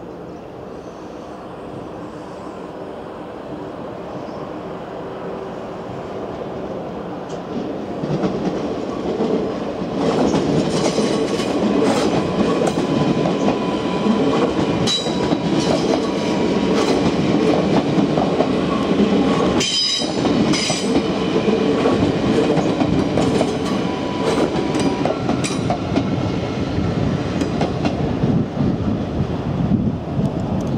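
NS VIRM double-deck electric train passing close by, building up over the first ten seconds into a loud, steady rumble of wheels on rails. Clusters of clicks as the wheels cross rail joints come about ten to twenty seconds in, over a thin steady tone.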